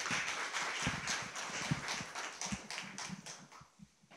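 A congregation applauding, a dense patter of hand claps that thins out and dies away over about four seconds.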